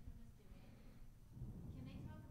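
Near silence with a faint voice away from the microphone, briefly louder about a second and a half in.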